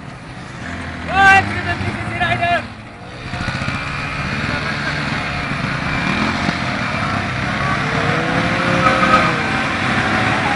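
Many motorcycle engines revving together in a group burnout, a dense roar that sets in about three seconds in and keeps growing louder. Before it, two short shouts from the onlookers.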